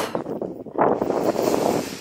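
Wind buffeting the microphone, a gusty rush that swells about a second in.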